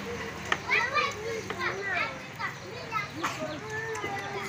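A crowd of young children chattering and calling out at once, many high voices overlapping, with a sharp click about half a second in.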